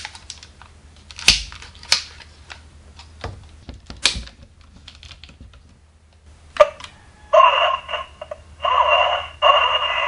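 Plastic parts of the DX Signaizer toy clicking and snapping as it is switched into police baton mode. About seven seconds in, the toy's electronic sound effect plays through its small speaker in three bursts.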